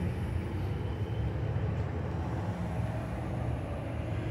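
Steady street ambience with a low traffic rumble.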